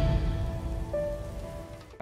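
The fading tail of a channel logo sting: a hissing wash with a few held tones that dies away steadily over two seconds.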